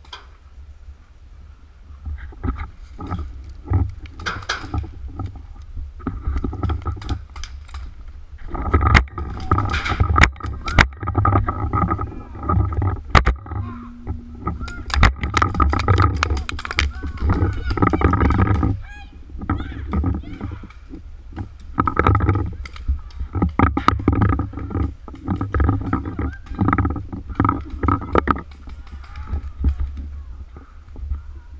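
Paintball game: sharp pops of paintball markers firing, in clusters through the middle of the stretch, with players shouting in the distance. Over it runs a heavy low rumble from the body-worn camera being jostled.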